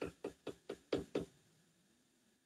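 A quick run of light knocks or taps, about four or five a second, that stops about a second and a half in.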